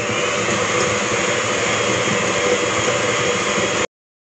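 VonShef electric hand mixer running at a steady speed, its beaters creaming butter and sugar in a glass bowl. The sound cuts off suddenly just before the end.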